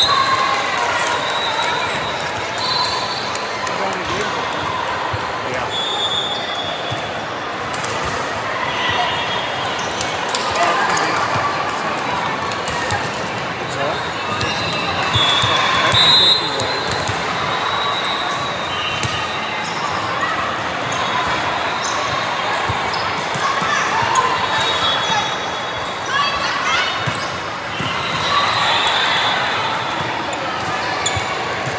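Indoor volleyball game sounds echoing in a large gym: the ball struck and hitting the floor, players calling to each other and spectators shouting, with short high sneaker squeaks on the hardwood court coming and going. A louder burst of cheering comes about halfway through as a point is won.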